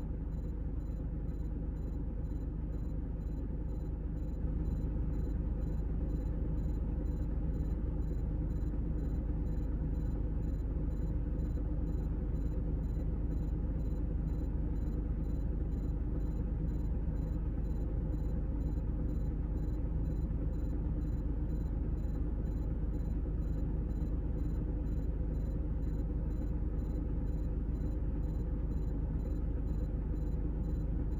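Steady low diesel engine rumble heard from inside a vehicle, growing a little louder about four seconds in.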